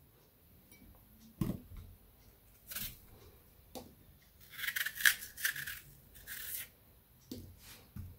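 Kitchen knife cutting the core out of a peeled apple on a wooden cutting board: a few light knocks on the board, then around the middle a short run of crisp scraping cuts through the apple flesh, with one more shortly after.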